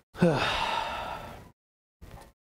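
A man's long sigh: it starts voiced, falling in pitch, then trails into a breathy exhale that fades out about a second and a half in.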